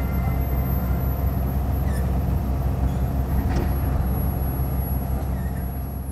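Boat engine running with a steady low rumble, fading out near the end.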